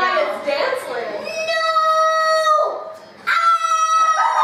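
A child's voice gives two long, steady-pitched cries: the first starts a little over a second in and holds for more than a second, and the second starts near the end at a higher pitch.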